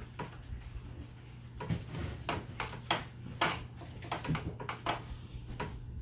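Irregular light knocks and clicks, about a dozen scattered through the few seconds, over a steady low hum.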